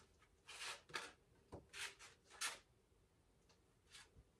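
A deck of tarot cards being shuffled by hand: about five faint, brief swishes of cards sliding over one another in the first half.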